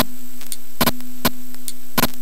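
A phone's vibration motor picked up as electromagnetic interference by an inductive EMI detector and played through its speaker: a steady low buzzing tone over hiss, broken by several sharp clicks.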